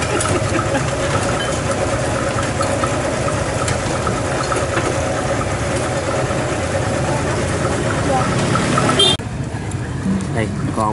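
Street-side ambience: a motorbike engine idling close by under the chatter of people at the tables. The sound drops off suddenly near the end.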